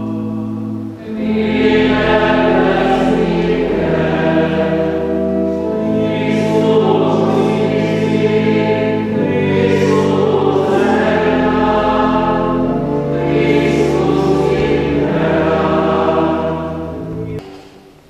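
Voices singing a church hymn together over steady held low chords, sounding through a church interior; the music fades out near the end.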